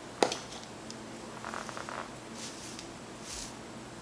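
Soft, faint rustling of curly synthetic-looking wig hair being handled and fluffed with the hands, after a single sharp click about a quarter second in.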